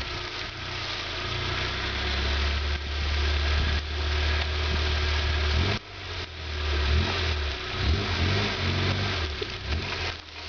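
Suzuki Samurai's four-cylinder engine running at low revs as the lifted rig crawls down a steep ledge, steady at first. About six seconds in the sound dips suddenly, then comes back as short, uneven throttle blips rising and falling in pitch.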